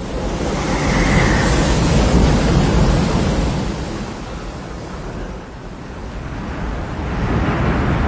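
Rushing surf and wind of a giant tsunami wave sweeping in over a beach, a film sound effect: it swells over the first two seconds, eases off in the middle and builds again near the end.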